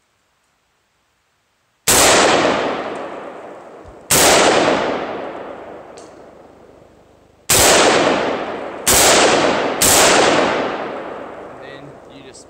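Five shots from an AR-15-style rifle, the first about two seconds in: two about two seconds apart, then three more in quicker succession near the end, each trailing off in a long echo.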